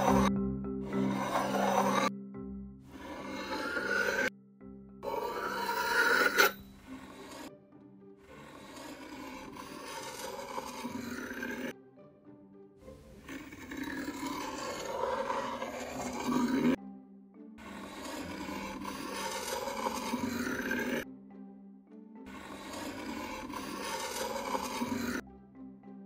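A metal butter knife slicing through kinetic sand: a soft, gritty rasping scrape. It comes as a series of separate cuts a few seconds long, each broken off abruptly by a short silence.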